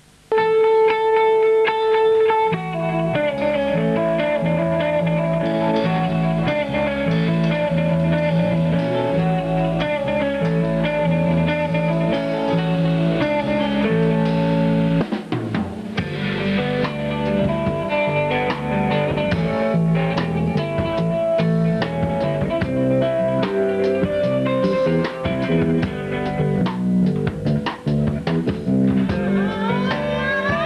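Live rock band playing an instrumental passage: a single held note opens it, then electric guitar, bass and drum kit come in together about two seconds in. The drums grow busier about halfway through.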